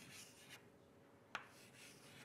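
Chalk writing on a chalkboard: faint scratching strokes, with one sharp click about a second and a third in.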